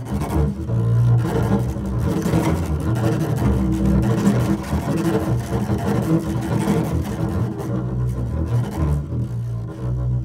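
Double bass bowed hard in free improvisation: low sustained notes with a rough, scratchy noise over them, continuous and loud, thinning out near the end.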